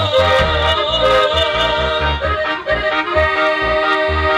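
Live band dance music, instrumental: a sustained accordion lead over a pulsing bass line.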